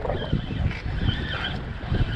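Wind buffeting the microphone: a steady low rumble, with two faint, thin high tones, one just after the start and one about a second in.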